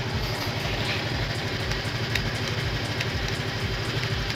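Motorcycle engine idling steadily, with an even low beat.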